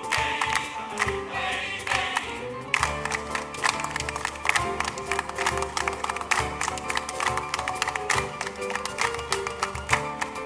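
Male choir singing, then from about three seconds in a quick, steady rhythm of hand claps from the singers over held piano tones.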